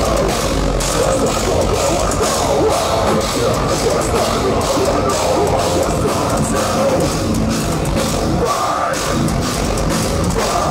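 Metalcore band playing live at full volume: distorted electric guitars, bass and a pounding drum kit, with the singer's voice on top, heard loud and dense from within the crowd.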